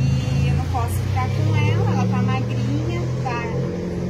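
A steady low engine hum, typical of a motor vehicle idling, under a woman's talking.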